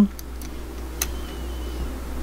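A few light clicks of 20 gauge wire against round pliers as the wire is bent by hand, the clearest about a second in, over a steady low hum.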